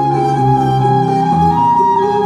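Electric violin playing a pop melody over a backing track with bass and chords. It holds a long note, then steps up to a higher one about one and a half seconds in.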